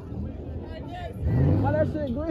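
Car engine revving hard during a burnout, its pitch rising and falling, with a loud rising rev about halfway through over a steady low rumble.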